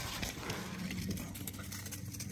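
Outboard motor's electric power trim and tilt unit running with a steady low hum, starting about half a second in, as the trim switch is worked.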